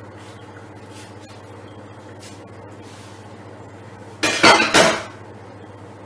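Stainless steel cooking pots clanking: a loud metallic clatter of two quick knocks with ringing about four seconds in, as a pot is handled and set down, over a steady low hum.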